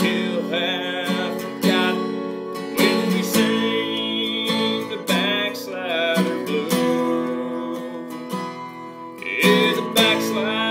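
A man singing a country song while strumming chords on an acoustic guitar.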